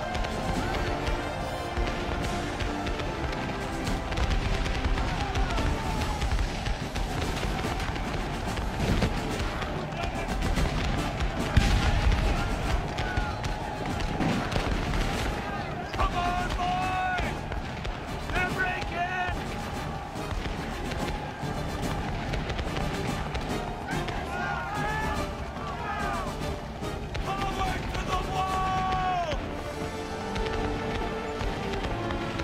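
Film score music over battle sound: repeated rifle-musket fire throughout, a heavy blast about twelve seconds in, and men yelling and shouting in the second half.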